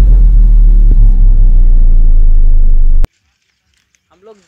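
Cinematic intro sound effect: a very loud, deep bass rumble that cuts off suddenly about three seconds in.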